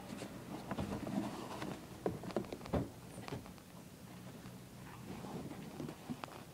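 Purple construction paper being handled by hand as a box is pressed into shape: scattered light taps, clicks and paper rustles, most of them in the first half.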